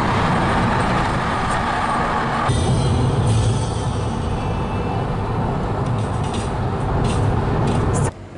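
Steady road and engine noise of a car driving at motorway speed, heard from inside the car. Its tone shifts abruptly about two and a half seconds in, where one stretch of driving cuts to another.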